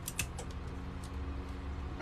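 A couple of light clicks as clear tape is pulled from a desktop tape dispenser and pressed down along a paper seam, then a low, steady background hum.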